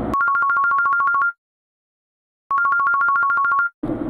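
An electronic telephone ringing twice, each ring about a second long, a rapid warble between two high tones, with a second of silence between the rings and no car noise behind them.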